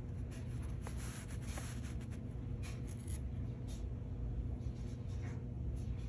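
Soft, intermittent scratchy rustling over a low steady hum, with short strokes clustered in the first half and a few more near the end.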